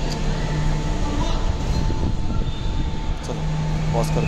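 Steady background rumble of an airport terminal entrance, with a low hum and a thin high tone running under it.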